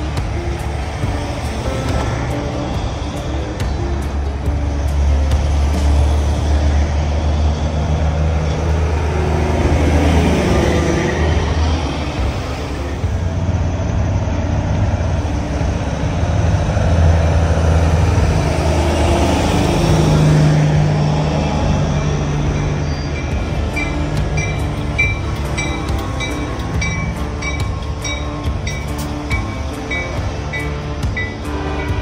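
Diesel engines of big-rig semi trucks rumbling as they roll slowly past one after another, the deep rumble swelling twice as trucks go by. A regular ticking of about two clicks a second comes in near the end.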